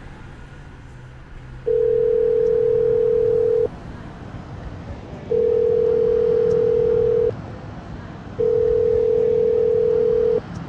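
Ringback tone of an outgoing mobile phone call while the other phone rings: three long, steady single-pitch tones, each about two seconds, with short gaps between them.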